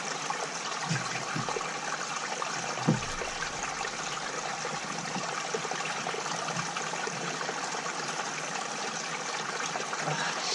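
Steady rush of running water, with a few knocks of parts being handled; the loudest knock comes about three seconds in.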